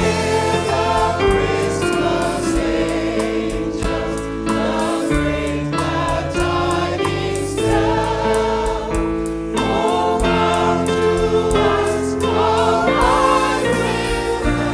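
Choir singing a Christmas carol, voices carried over held low bass notes.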